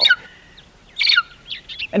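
Bald eagle calling: a quick run of high, thin, falling chirps about a second in, with a fainter note before and a few after. It sounds like a cross between a squeaky toy and a seagull.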